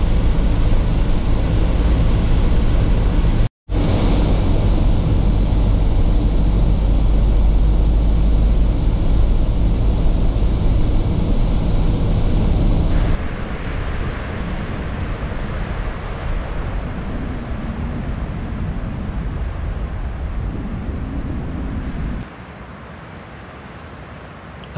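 Van cabin noise while driving on a wet road: a steady low engine hum under road and tyre noise, cut off for a moment about three and a half seconds in. After about thirteen seconds the low hum falls away to a steadier hiss. Near the end the sound drops to a quieter steady rush.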